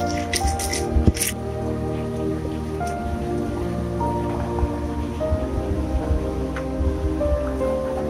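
Instrumental background music with held melodic notes. During the first second or so, a few crunching strokes of a pestle grinding chilies in a stone mortar sound under it.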